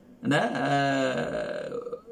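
A man's voice holding one long, drawn-out vowel, like an 'uhh', for about a second and a half at a nearly steady pitch.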